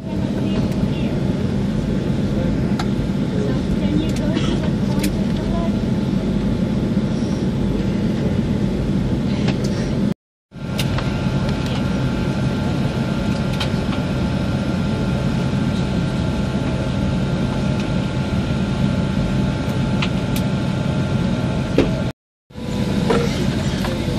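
Steady cabin drone of an airliner in flight: a low rumble with a faint constant hum over it. It drops out briefly about ten seconds in.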